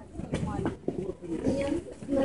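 Low voices talking, with a few light handling clicks.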